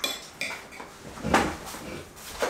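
Metal spoons clinking and scraping against plates while eating: a sharp ringing clink at the start, a lighter tap about half a second in, and a louder scrape about a second and a half in.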